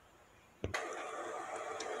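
A brief near silence, a single click, then sugar and corn syrup candy syrup boiling in a stainless steel pot: a steady bubbling hiss as the syrup has just come to the boil.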